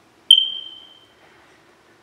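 A single high-pitched ping, about a third of a second in, that fades away over about a second.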